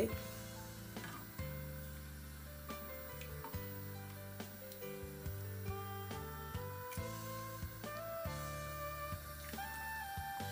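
Soft background music: sustained notes that change pitch every second or so over a steady bass.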